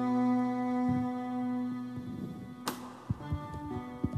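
Live band music: a held chord dies away over the first two seconds, then quieter, sparser notes follow, with a single sharp click a little after halfway.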